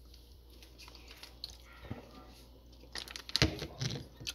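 Quiet room, then a short cluster of clicks and knocks near the end, the loudest about three and a half seconds in: handling noise as things are picked up and moved on a kitchen counter.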